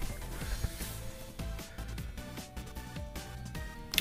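Background music: a quiet track of short notes at changing pitches.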